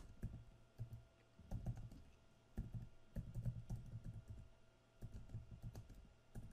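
Computer keyboard being typed on, faint, in several short bursts of keystrokes with brief pauses between.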